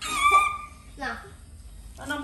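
A baby macaque gives a high-pitched squeal lasting about half a second, then a shorter cry that falls in pitch about a second later.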